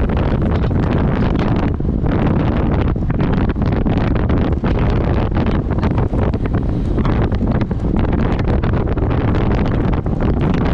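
Heavy wind buffeting on the microphone of a camera riding on a road bike going downhill. Frequent irregular knocks and rattles come through it as the bike jolts over potholed asphalt.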